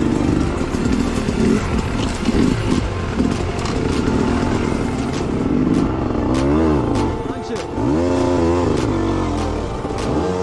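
Dirt bike engines running at low speed on a rocky trail climb, the pitch rising and falling with short blips of throttle in the second half, with scattered clicks and knocks from the bikes on the rocks.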